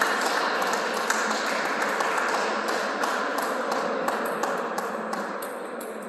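Light, irregular clicks of table tennis balls in a sports hall, over a steady wash of noise that fades slowly toward the end.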